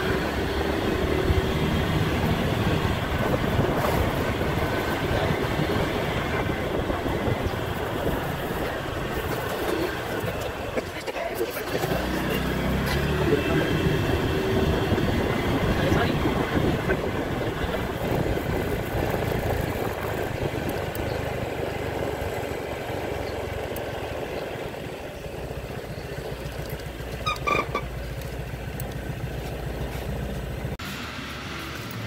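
Wind rush on the microphone with engine and road noise from a scooter being ridden at around 28 km/h, heard from the rider's seat. It eases off over the last few seconds as the scooter slows to a stop.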